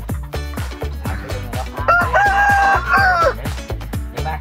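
A rooster crowing once, a single drawn-out crow starting about two seconds in, held for over a second and dropping in pitch at the end. Background music with a steady beat runs underneath.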